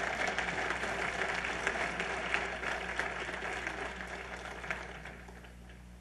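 Church congregation applauding at the end of the sermon, a spatter of many hand claps that dies away over about five seconds.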